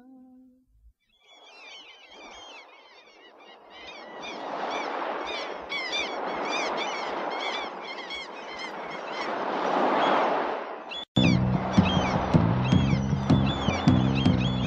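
Recorded bird calls, many short chirping calls close together, over a rushing noise that swells and fades, closing out a track. About eleven seconds in it cuts off abruptly and a rock band comes in with drums and bass.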